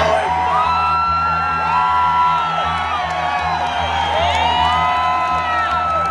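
Live rock band playing: electric guitar holding long notes that bend and slide, over drums and a steady low pulsing bass. The crowd cheers and whoops throughout.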